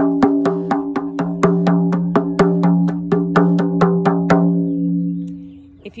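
Hide hoop frame drum struck by hand in a fast, even beat of about four strokes a second, with a low, sustained ring under the strokes. The strokes stop a little over four seconds in and the ring dies away. The hide has just been stretched out with weights to deepen the drum's tone.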